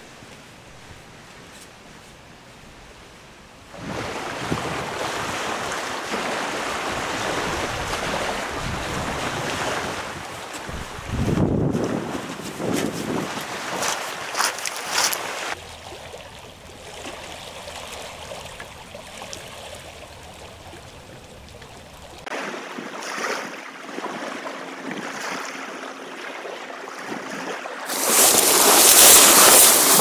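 Small waves washing onto a rocky shore, with wind buffeting the microphone at times and a loud rush of wind noise near the end.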